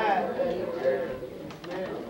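Speech: a man preaching into a handheld microphone in a small church room.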